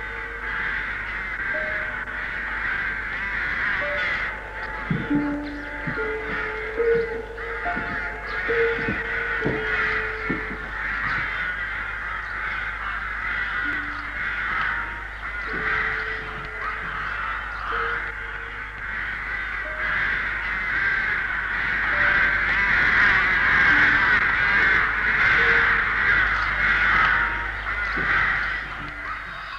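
A large flock of crow-like birds calling together in a dense, continuous chorus of caws that grows louder in the second half, with a few short lower calls scattered through the first half.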